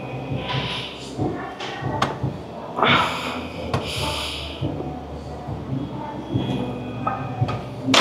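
A weightlifter taking several sharp, deep breaths while bracing under a loaded barbell before a bench press attempt, with a few sharp clicks and a steady low hum behind.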